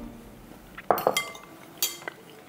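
Metal cutlery clinking against a glass bowl: a quick cluster of clinks about a second in, each ringing briefly, and one more sharp clink near the end.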